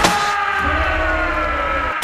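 Trailer sound design: a hit, then several tones gliding slowly down in pitch together over a low rumble, cut off suddenly at the end.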